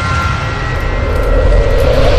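Cinematic logo-intro sound effect: a low rumble under a whooshing swell that builds toward the end, with a held chord fading out in the first half.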